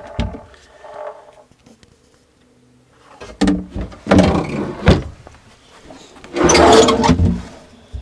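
Original solid-wood drawers of a 1978 GMC motorhome's storage cabinets being worked open and shut: a few sharp wooden knocks with rubbing about three seconds in, then a longer, louder sliding rub near the end.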